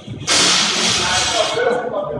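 A loaded barbell with bumper plates dropped onto the gym floor: a sudden loud crash about a quarter second in, its noise dying away over about a second.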